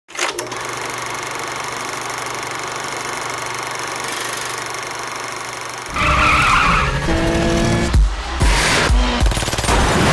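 Show-intro sound design: a steady rushing noise with a low hum for about six seconds, then a music sting with heavy bass beats starting suddenly and growing louder.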